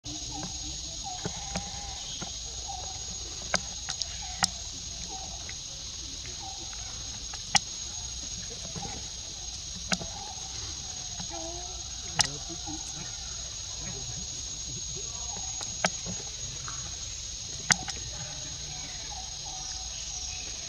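A steady, high-pitched insect chorus, with scattered sharp clicks every few seconds and faint wavering voices or calls beneath it.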